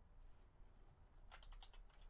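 Faint typing on a computer keyboard: a quick run of five or six keystrokes about a second and a half in, as a word is typed into a text box.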